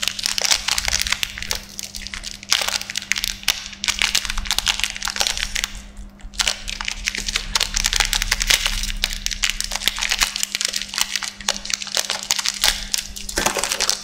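Plastic wrapper of an Apollo chocolate wafer crinkling and crackling as it is handled and torn open, with many sharp crackles and a couple of brief pauses.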